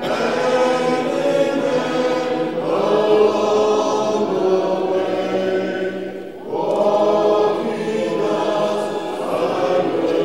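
A church congregation singing a hymn together unaccompanied, many voices holding long notes in phrase after phrase, with a short break for breath about six seconds in.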